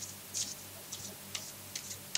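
Tarot cards being handled and shuffled by hand: a few light, short ticks about every half second, over a faint steady hum.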